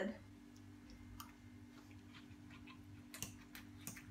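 Quiet room with a faint steady hum and a few soft clicks, one about a second in and three close together near the end.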